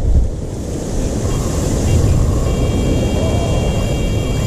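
Wind buffeting the microphone over lapping water. About halfway through, a steady high-pitched tone from a rod's bite indicator starts and keeps sounding, signalling a catfish bite.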